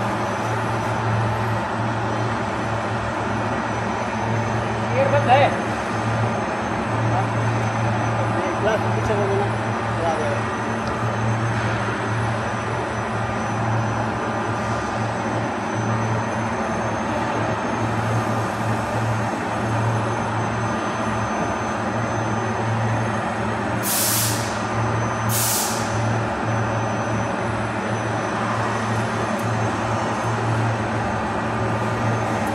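Steady hum of factory machinery with a strong low drone. Two short hisses come about a second and a half apart near the end.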